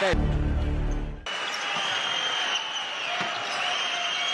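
Basketball game court sound: a hubbub of crowd noise with high squeaks, about what sneakers make on the court, after a short low buzz that cuts off abruptly about a second in.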